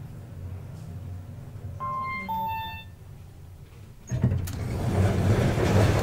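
KONE MonoSpace elevator arriving at the landing: a low steady hum, then a two-tone arrival chime about two seconds in, the second tone slightly lower than the first. About four seconds in, the landing doors slide open with a sudden rise of rushing noise that carries on.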